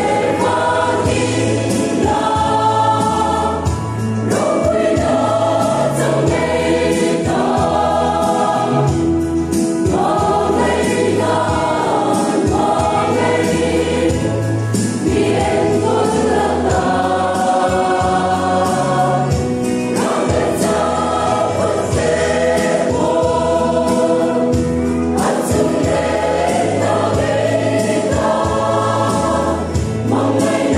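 Mixed choir of women and men singing a gospel hymn together in parts, with steady low bass notes held beneath the voices.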